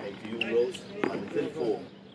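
Tennis rally: a single sharp pop of a ball struck by a racket about a second in, with short indistinct voice sounds around it.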